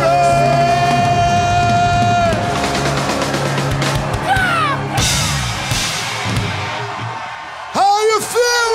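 Rock band ending a song live: a long held note rings over the band for about two seconds, then the music dies away. The crowd cheers, with a falling whoop about four seconds in and a burst of yells and whoops near the end.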